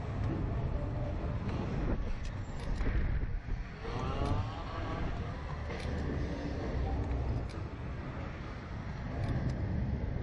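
Wind buffeting the onboard camera of a swinging Slingshot ride capsule: a steady, heavy rumble of rushing air. About four seconds in, a short wavering high sound rises over it.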